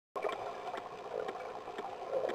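Underwater ambience picked up by a diving camera: a steady, muffled watery rush with faint scattered clicks.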